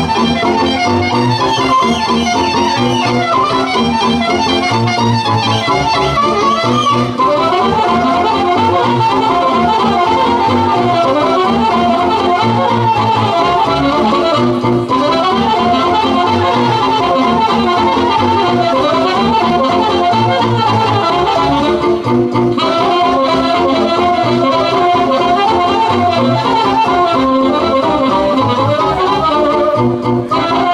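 Romanian folk dance music: a quick melody with fast runs over a steady, pulsing bass beat.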